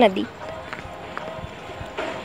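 A voice says one word, then outdoor background with faint distant voices and light scuffs.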